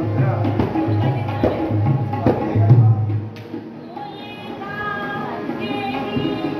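A hand drum played in a steady rhythm for about three seconds, then it stops and a voice begins singing a melodic line.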